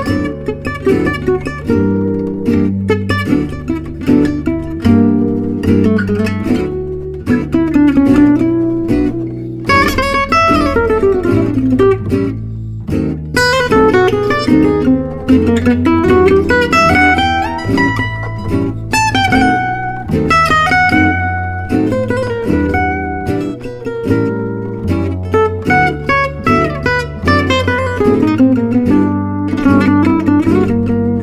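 Background music: acoustic guitar playing a picked melody with quick runs of notes over low bass notes.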